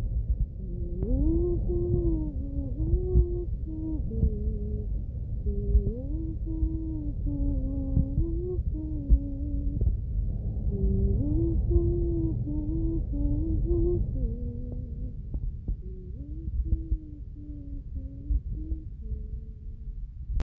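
A person humming a homemade tune with no words, a melody of short held notes stepping up and down, over low rumbling noise.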